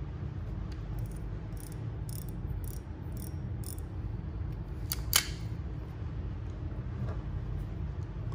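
Shimano Exsence BB size 3000 spinning reel being worked by hand: a run of small, faint mechanical clicks as the handle and bail are moved, with one sharper, louder click about five seconds in.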